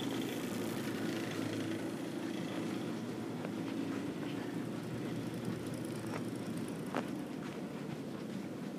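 A steady low hum with a light noisy wash over it, and a single short click about seven seconds in.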